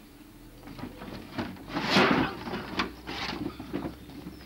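Loose wooden planks and boards on a homemade hut roof knocking, creaking and scraping as people walk and shift about on them, with the loudest scraping clatter about two seconds in.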